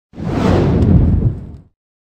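Intro whoosh sound effect: one deep, noisy rush that swells in quickly, holds for about a second and fades out.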